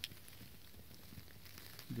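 Quiet background with a few faint rustles and soft ticks, like light movement in dry leaf litter, and one short click right at the start.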